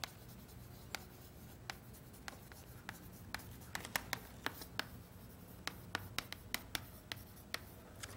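Chalk writing on a chalkboard: a string of sharp taps and short scratches as letters are formed, coming thicker in the second half.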